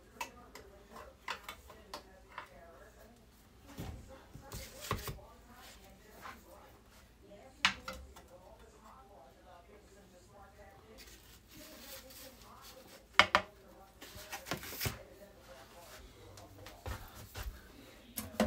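A spatula scraping and clinking against a glass baking dish as a slice of pie is cut and lifted out, a run of light scattered clicks with two sharper knocks about 8 and 13 seconds in.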